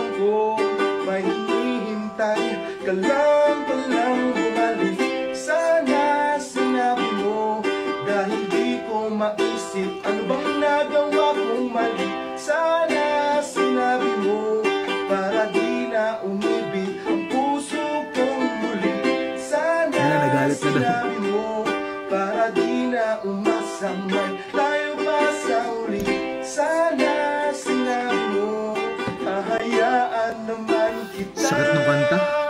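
A man singing with his own strummed ukulele accompaniment, an acoustic cover song, in a fairly fast passage of the song.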